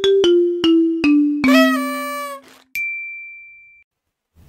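Intro jingle: a descending run of struck, chime-like notes, about two a second, landing on a held note about a second and a half in. A click follows, then a single high, pure tone that rings for about a second and fades out.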